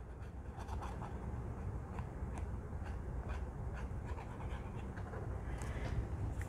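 Faint, scattered light scratches and clicks of a squeeze-bottle glue nozzle drawn across a small round of cardstock as glue is spread on it, over a low steady room hum.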